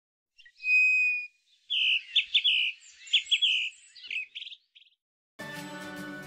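A small songbird singing: one clear whistled note about half a second long, then a run of quick high chirps and trills for about three seconds. Soft background music comes in near the end.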